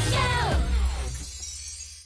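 Closing bars of a trailer's pop backing music: a falling swoop in the first half-second over a steady bass, then the music fades out.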